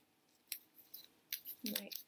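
Duct tape being handled and pressed onto cardboard strips: a sharp snap about half a second in, then short crinkly crackles and clicks.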